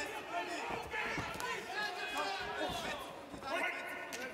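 Arena crowd noise with faint shouting voices, and a few dull thuds of gloved punches landing.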